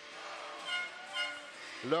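Crowd noise in a hockey arena: a steady murmur with faint music or voices in it during a break in the commentary.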